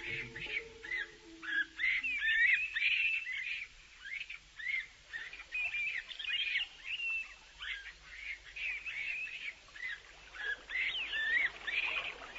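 A chorus of many small birds chirping and twittering over one another: dense, short rising and falling calls.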